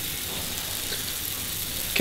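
Raw ground-beef patty just starting to sizzle in melted butter in a hot frying pan, a steady light hiss.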